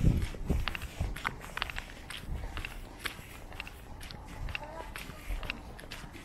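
Footsteps at a steady walking pace on a wet asphalt road, short crisp steps two to three a second. A brief low rumble sounds right at the start.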